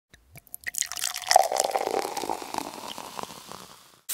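Liquid pouring and dripping, a run of small splashes that starts with a few drips, swells and then fades away.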